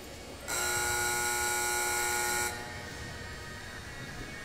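Arena buzzer horn sounding one steady, loud tone for about two seconds, starting and stopping abruptly: the time signal that ends a two-and-a-half-minute cutting run.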